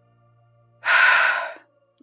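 A single loud, sharp breath from a person about a second in, starting suddenly and fading within under a second.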